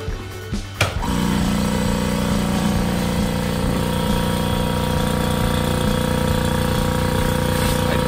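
Electric vacuum pump switching on about a second in and then running steadily with a hum, drawing vacuum through the clamping pods that hold the panel down on the CNC bed. No leak hiss is heard.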